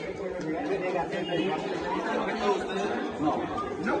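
Several men talking over one another, overlapping speech with no other clear sound.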